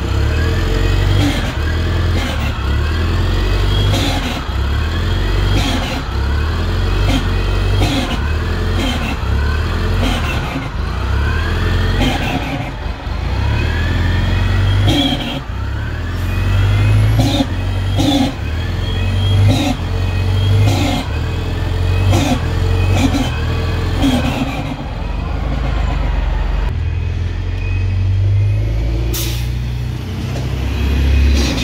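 A Flyer transit bus's Detroit Diesel Series 50G natural-gas engine running with a deep steady rumble. Regular sharp clicks and short rising-and-falling whines repeat over it about every second and a half.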